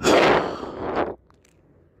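A heavy sigh: a long breath blown out close to the microphone, loud and breathy, dying away after about a second.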